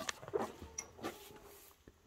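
A cow breathing and sniffing close to the microphone as it noses at the camera, with a couple of faint clicks.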